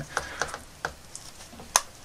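A few irregular small clicks and taps as hands press a tight, rubbery toy helmet down onto a plastic Mego action figure's head. The sharpest click comes near the end.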